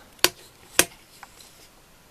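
Two sharp clicks about half a second apart from the controls of a mini drill/milling machine with its motor stopped, the sound of its switches being set before a brief restart.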